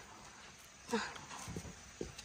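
Mostly quiet, with one short voice sound about a second in, then a few soft low knocks.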